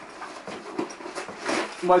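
Nylon and cloth rustling as a folded mobile softbox in its bag is pulled out of a camera backpack, with a breathy exhale; the noise swells briefly shortly before the end.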